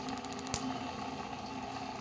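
Homemade Van de Graaff generator running, its fan motor giving a steady hum as it drives the rubber-band belt. A quick run of small spark snaps comes from the charged dome, ending in one sharper snap about half a second in.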